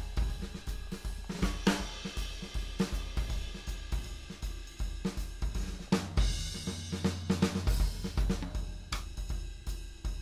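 A swing jazz drum pattern from Steinberg's Groove Agent SE virtual drum kit plays back, with cymbals, snare and kick in a steady run. About six seconds in, a cymbal wash rings for a second or so.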